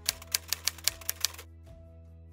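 Typewriter key-strike sound effect, about seven quick clacks in the first second and a quarter as text is typed out, over a soft steady music bed that carries on after the clacks stop.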